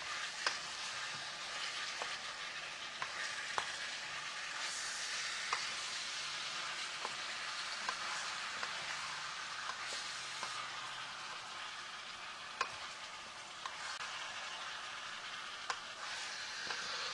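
Chicken, broccoli and yellow pepper sizzling in a pan over a gas flame, stirred by hand, with a utensil clicking against the pan now and then.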